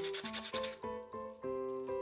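Sandpaper rubbed rapidly back and forth on the sawn edge of a thin hinoki cypress board, smoothing the cut, with the strokes stopping a little under a second in. Background music plays throughout.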